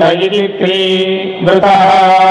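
Male voices chanting Vedic recitation in ghana pāṭha, the word order repeated back and forth. Long syllables are held on a nearly steady pitch, with short breaks for new syllables about half a second in and again about a second and a half in.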